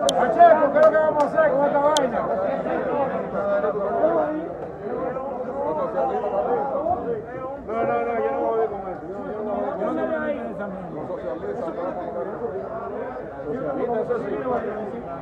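Many voices talking over one another in a large chamber, a hubbub of legislators' chatter. A few sharp clicks sound in the first two seconds.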